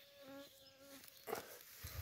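A flying insect buzzing close by, a steady hum lasting under a second, followed by a few soft rustles of movement through grass.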